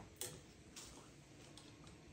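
Near silence with a few faint, short clicks, the first one a little louder than the rest.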